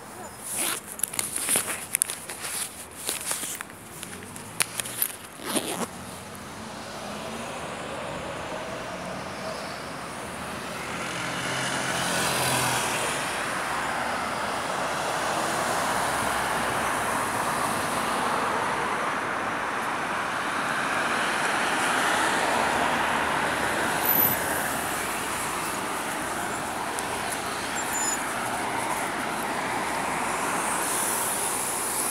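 Road traffic passing close by: a steady rush of tyres and engines that swells about ten to twelve seconds in and stays up. In the first six seconds, a run of sharp clicks and knocks.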